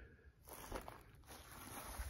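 Near silence with faint footsteps and rustling in dry grass.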